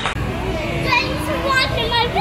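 A young child talking in a high voice, in short rising and falling phrases.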